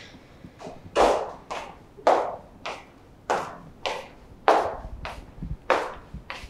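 Footsteps of hard-soled shoes on a hard floor: a steady walk with sharp clicks about every half second.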